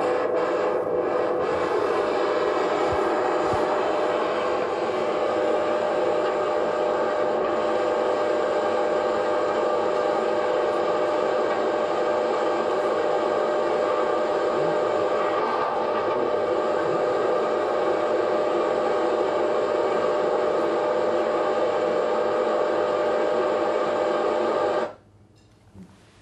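Steady noisy roar with a steady hum: the soundtrack of a fire-test video of concrete, played over small loudspeakers. It cuts off suddenly about a second before the end.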